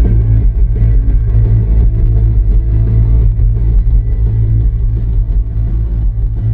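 Rock band playing live through a loud PA, with electric guitar over a heavy, muffled low end of bass and drums.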